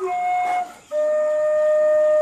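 A flute playing slow, held single notes: a short note that breaks off about two-thirds of a second in, then a lower note held steadily from about a second in.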